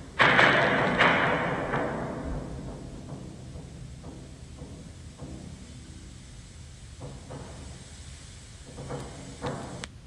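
Concert bass drum played solo in a recording: a loud booming stroke just after the start that dies away over about two seconds, followed by softer strokes.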